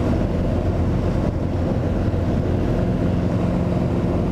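Socata TB10 Tobago's four-cylinder Lycoming engine and propeller running steadily at full takeoff power in the climb just after liftoff, heard from inside the cabin.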